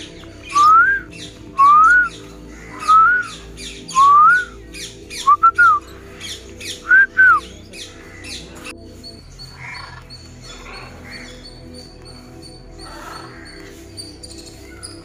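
A bird calling loudly with short rising whistles, about one a second, some of them doubled. The calls stop about halfway through and leave a quieter bed of music.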